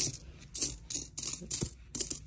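Nickels clinking against one another as a hand spreads and sorts a pile of them on a paper towel: a quick run of sharp metallic clicks, several a second.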